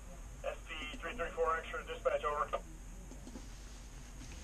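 A man's voice coming over a two-way radio's speaker, thin-sounding, for about two seconds starting about half a second in: a train crew calling the dispatcher.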